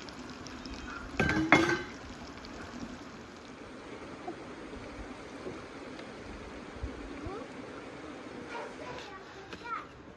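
Cutlets and vegetables simmering in a kazan over a wood fire: a steady, watery hiss. A brief louder clatter comes about a second in.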